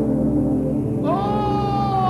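A sheep bleating: one long call starting about a second in, held steady and then falling in pitch, over low steady background music.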